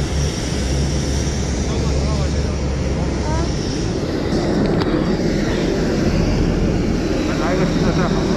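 Steady rumble and whine of jet aircraft noise on an airport apron, with a deep low hum that eases off a little before halfway.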